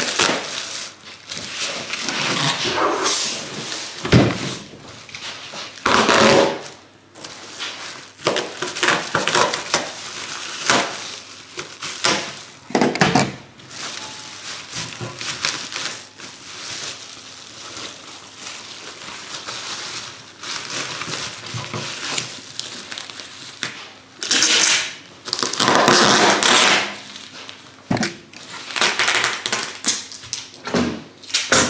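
Plastic bubble wrap rustling and crinkling as it is handled and wrapped around an object, in irregular bursts with a few brief knocks on the counter. The longest, loudest rustling comes near the end.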